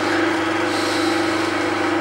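Lathe running steadily with a small drill bit in its chuck boring into a plywood disc: a steady motor hum with a higher hiss from the cutting. The hole is one of the ring of holes drilled one division apart around a wooden gear blank to form its teeth.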